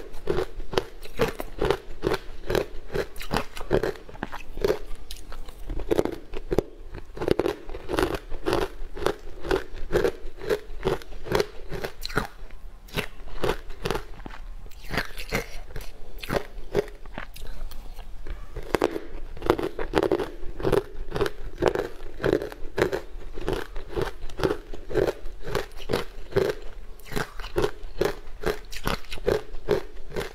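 Close-up crunching and chewing of a powder-coated sweet ice block, with dense crackling bites and a steady chewing rhythm of about two chews a second.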